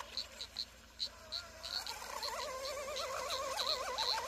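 Distant RC outrigger boat's brushless motor and prop whining thinly. From about halfway through, the pitch warbles up and down and climbs as the boat hops across the water instead of running flat. The driver blames the hopping on the low-pitch prop.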